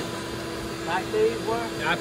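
People talking over a steady hum, with the voices starting about a second in.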